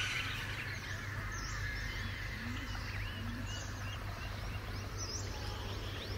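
Small birds chirping in short, scattered calls, over a steady low hum of outdoor ambience.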